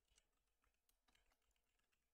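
Very faint computer keyboard typing, barely above silence: a quick, irregular run of keystrokes as a password is entered.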